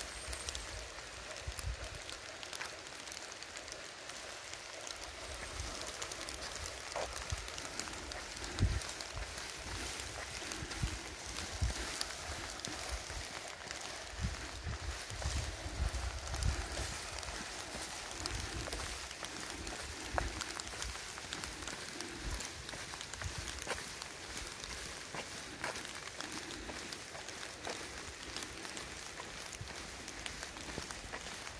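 Light rain falling outdoors: a steady soft hiss with scattered drop ticks, while gusts of wind buffet the microphone now and then.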